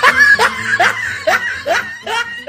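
Laughter in short, evenly spaced bursts that each rise in pitch, about five in two seconds.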